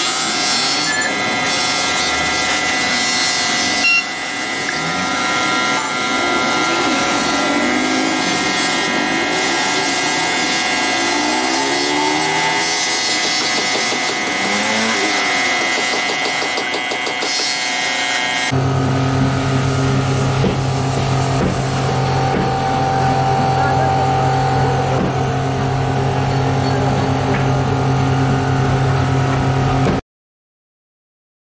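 Electric bench buffer running steadily, its pink buffing wheel rubbing against a plastic car tail-light lens as the lens is polished. About two-thirds of the way through, the sound changes suddenly to a steadier, deeper hum.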